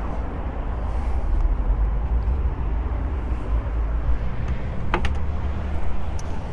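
Steady low rumble with a short click about five seconds in as the G63's rear side door is unlatched and opened.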